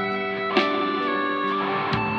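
Sunburst Stratocaster-style electric guitar played through an amplifier: chords ringing on. A new chord is picked about half a second in and another near the end.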